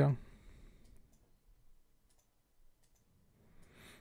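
A few faint, scattered computer mouse clicks while switching windows on the computer.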